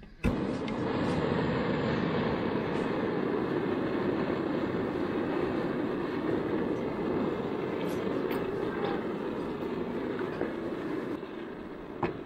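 High-output gas hose burner (Jera JB-103A) running under a cast-iron mini pan, a steady rushing hiss of flame. A few light clicks sound over it, and the noise eases slightly near the end.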